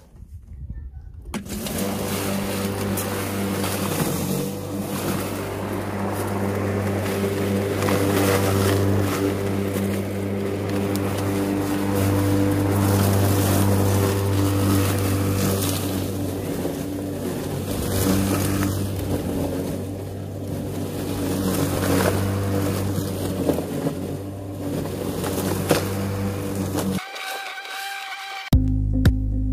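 Flymo corded electric rotary lawn mower running as it is pushed through grass, a steady motor hum that starts about a second in and cuts off shortly before the end.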